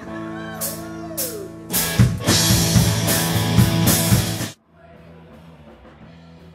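Live rock band on electric guitar, bass and drum kit, the guitar bending notes. About two seconds in the drums and cymbals come in hard and the band plays loudly. About four and a half seconds in it cuts off suddenly, and quieter music follows.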